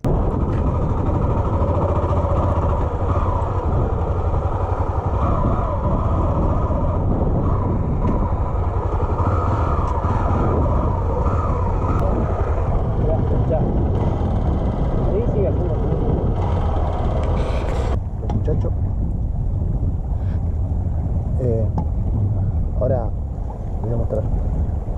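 Motorcycle being ridden: a steady engine rumble under way with heavy wind rush on the camera microphone. The sound changes abruptly about three quarters of the way through, and brief voices come in near the end.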